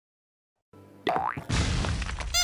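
Dead silence, then about a second in a short rising 'boing' comedy sound effect, followed by background music with a heavy bass beat that comes in at the halfway point.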